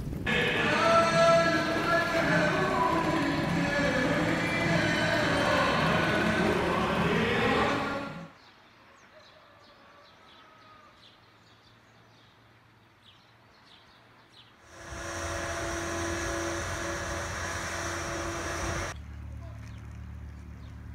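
A melodic voice with a wavering, bending pitch for about eight seconds, then a quiet stretch with faint ticks, then a steady held tone for about four seconds.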